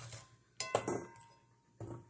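Two clinks against a stainless steel mixing bowl, a little over a second apart. The first leaves a short metallic ring.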